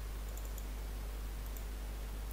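A few faint clicks of a computer mouse, a couple about half a second in and another about a second and a half in, over a steady low hum.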